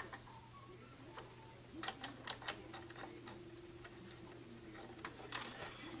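A few sharp clicks and ticks as small parts of a turntable's underside are handled while its drive belt is worked free: one at the start, three close together about two seconds in, another near the end. A faint steady hum lies beneath.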